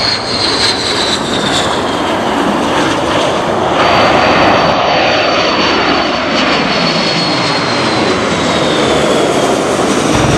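F-15 fighter jet engines running loud with a high whine as the jet comes in on approach. About four seconds in, the sound cuts to the four jet engines of a Boeing C-135-type aircraft passing low overhead, its high whine slowly falling in pitch as it goes by.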